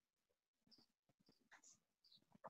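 Near silence: an open video-call line with only faint, indistinct small noises.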